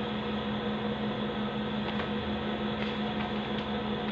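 Steady room hum: one constant low tone over an even hiss, like a running fan or appliance, with a couple of faint ticks near the middle.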